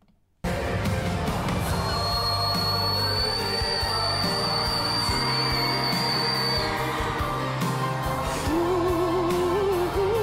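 Live concert recording of a male pop singer with band that cuts in abruptly. He holds one extremely high, thin whistle-register note, around C8, for about five seconds. Near the end he drops back to a lower sung line with wide vibrato.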